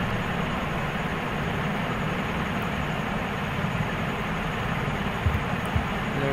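Steady background noise, a hiss with a low rumble underneath, with a couple of faint low knocks near the end.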